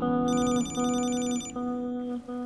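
A telephone rings once, a rapid trilling ring lasting a little over a second, over soft background music of held, repeated low notes.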